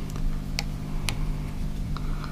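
A few light ticks of a marker pen and fingers against a sheet-metal scale guard as it is held in place, the two sharpest about half a second apart, over a steady low hum.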